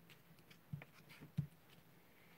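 Faint, dull taps of a clear acrylic-block rubber stamp being dabbed onto an ink pad on a tabletop. Two taps stand out, about two-thirds of a second apart, in the middle.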